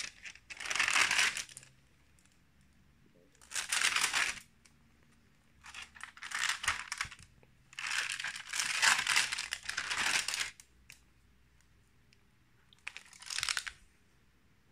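Pages of a stamp stockbook being turned by hand: the card leaves and their thin translucent interleaving sheets rustle and crinkle in five bursts, the longest about two and a half seconds, starting around eight seconds in.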